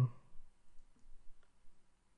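A few faint, irregularly spaced computer mouse clicks over a quiet room.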